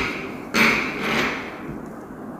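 Glue stick rubbed against paper on a tabletop: a scrape that starts sharply about half a second in and fades over about a second.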